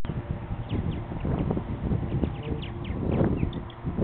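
Wind rumbling on the microphone, with knocks from the wooden nest compartments of a martin house being handled. Over it come many short, high, falling chirps from purple martins.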